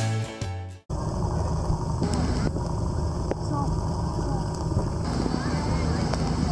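Guitar music stops abruptly about a second in. It gives way to open-air ambience: a low, steady rumble with faint distant voices.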